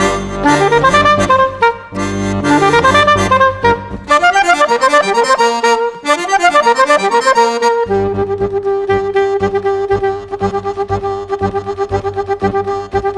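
Chromatic button accordion and saxophone playing a jazz-classical duet. Fast rising and falling runs over chords give way at about eight seconds to a long held note over a pulsing bass.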